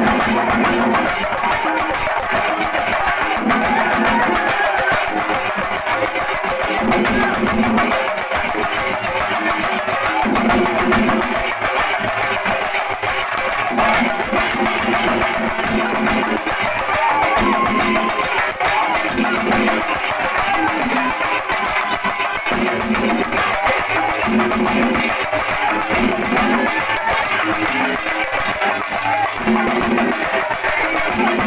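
Shinkari melam: a troupe of chenda drums beaten with sticks in a fast, dense, unbroken rhythm, loud throughout, with a low drum phrase repeating about once a second over a constant high wash.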